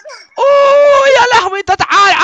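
A man's loud wailing cry: one high note held for most of a second, then broken into quick rapid syllables.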